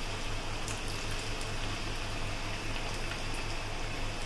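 Potato wedges deep-frying in hot oil in a steel kadai on a low flame: a steady sizzle of bubbling oil.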